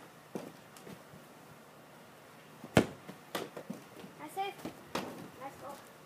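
A soccer ball kicked hard outdoors: one sharp, loud knock about three seconds in, followed by several lighter knocks and thuds over the next two seconds, with short cries from a child's voice in between.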